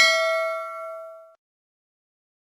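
A bell-notification ding from a subscribe-button animation. It rings with a clear tone and a few overtones, then fades away over about a second and a half.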